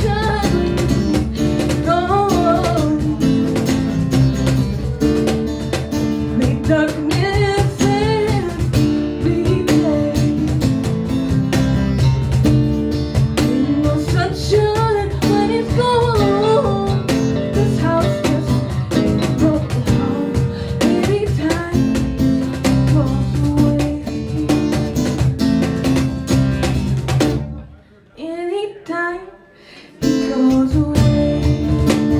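Live acoustic band: a woman singing over strummed acoustic guitar, with cajon and electric bass keeping the beat. Near the end the music drops to a faint passage for about two seconds.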